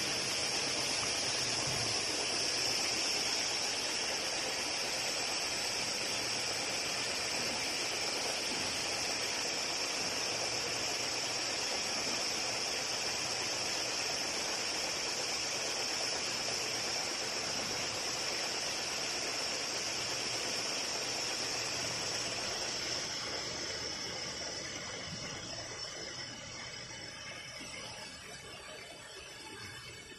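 Shrink sleeve steam tunnel hissing steadily, fading away over the last few seconds.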